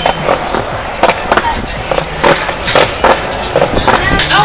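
Skateboard wheels rolling on pavement, with sharp clacks at irregular intervals.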